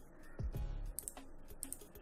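Several short, sharp clicks from a computer mouse and keyboard, over quiet background music with a low, steady beat.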